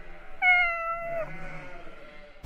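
A cat meowing once: a single call just under a second long, dropping slightly in pitch at its end.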